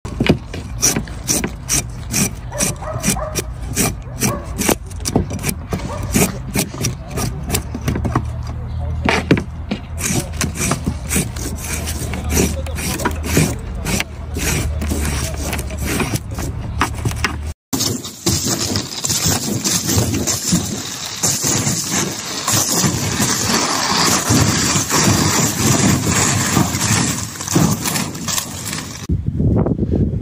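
A knife clicks against a wooden board in quick, uneven taps over a low rumble as green onion stalks are trimmed and stripped. After an abrupt cut at about 17 seconds, a steadier hissing noise takes over.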